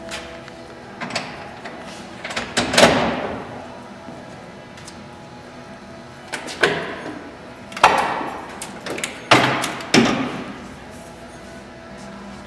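Metal equipment clanking and knocking inside a fire engine's tool compartment as a long cellar nozzle on its pipe is pulled out: about six sharp clanks with short ringing tails, the loudest about three seconds in.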